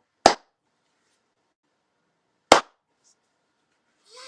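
Two sharp hand claps about two seconds apart.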